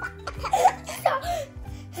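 Two young girls laughing over background music.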